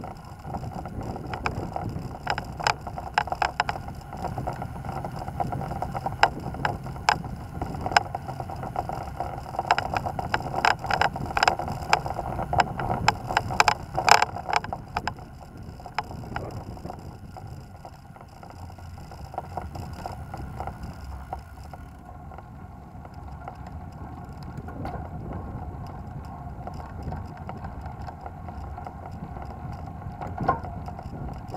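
A bike rolling along a street, its tyres rumbling and its frame and fittings rattling over paving with many sharp clicks and knocks through the first half. After about twenty seconds the rattling stops and a steadier low rumble is left.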